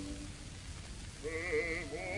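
Background song: after a brief lull, a voice sings a held note with heavy, wavering vibrato starting a little over a second in.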